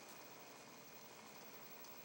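Near silence: faint steady hiss of room tone.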